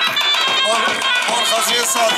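Loud Kurdish folk dance music with a reedy, pipe-like melody held over a steady drum beat, with voices mixed in.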